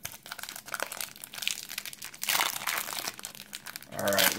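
Gold foil wrapper of a 1996 Pinnacle Select football card pack crinkling as it is handled and torn open, louder a little past halfway through.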